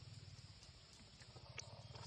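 Near silence: a steady low hum with one faint click about one and a half seconds in.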